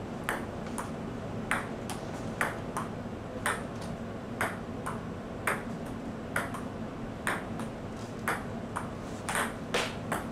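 Table tennis rally: a ping-pong ball clicking off the table and the paddles in a steady back-and-forth rhythm, about two clicks a second, alternating louder and softer.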